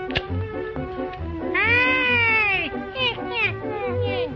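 Cartoon meowing wail, one long call rising then falling, followed by three short falling yowls, over jaunty background music with a steady beat. A sharp snip sounds just at the start.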